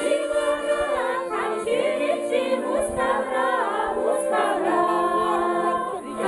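A women's folk choir singing in chorus to accordion accompaniment, the voices moving over steady held accordion notes.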